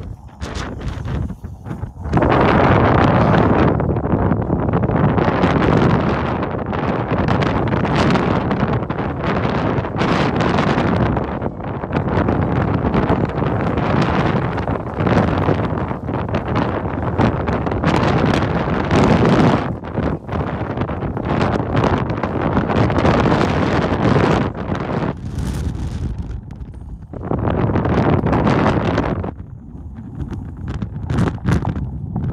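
Strong wind buffeting the microphone in loud gusts, with a brief lull near the start and another a few seconds before the end.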